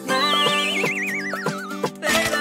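A high, warbling whistle-like tone sliding steadily downward over most of two seconds, a cartoon sound effect, over backing music with a steady beat.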